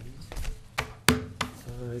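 A few sharp knocks and taps of papers and objects being handled on a wooden dais, picked up close by the table microphones, the loudest about a second in; a voice starts near the end.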